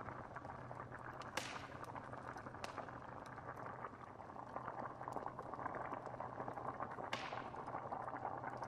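A pot of stew bubbling steadily over a wood fire, with the fire crackling in small scattered pops. Two sharper snaps stand out, one about a second and a half in and one near the end.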